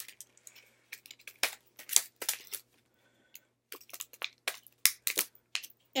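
Plastic packaging crinkling and crackling as it is handled: irregular sharp crackles with a short lull about halfway through.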